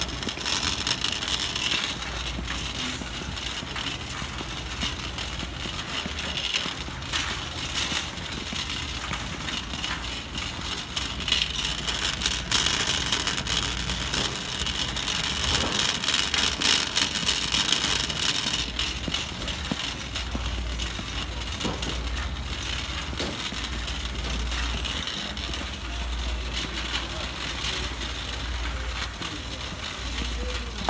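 Shopping cart rolling over a hard store floor, its wheels and wire frame rattling, with steady footsteps and background store noise.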